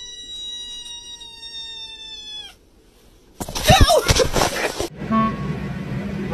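A kitten meowing: one long, steady, high-pitched call of about two and a half seconds that drops in pitch as it ends. About a second later comes a short, loud, noisier burst, and near the end music with a steady low drone begins.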